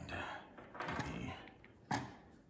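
Handling noise from a plastic ring light and its phone mount: soft rustling and small clicks, with one sharp click near the end.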